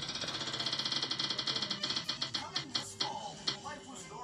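Spin-the-wheel phone app's tick sound as its on-screen wheel spins, played through the phone's speaker. The ticks come fast at first and slow to a few a second near the end as the wheel comes to rest.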